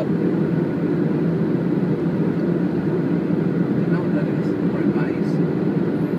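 Steady road and engine rumble heard from inside a moving car, even in level throughout.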